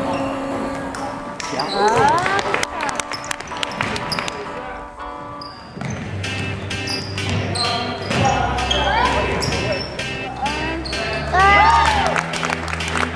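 Basketball game on a hardwood gym floor: sneakers squeaking in short gliding chirps and a ball bouncing, with voices and background music underneath. The loudest squeaks come about two seconds in and again near the end.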